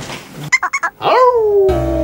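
A few short yelps, then one long falling howl-like call, like a dog's. Saxophone music with bass starts near the end.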